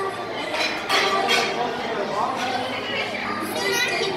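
Background chatter of many voices, adults and children talking over one another, with no single voice standing out.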